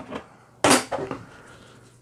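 A single short, sharp snap about two-thirds of a second in, from hands handling a plastic ruler and a roll of masking tape on a tabletop, followed by faint handling noise.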